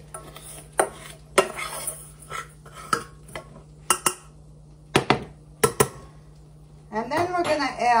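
Scattered clinks and knocks of kitchen dishes and utensils being handled, about half a dozen sharp ones, over a steady low hum.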